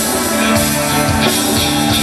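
A rock band playing live: electric guitars holding sustained notes over bass and a drum kit, in an instrumental passage without vocals. It is heard from the audience in a large arena through the PA.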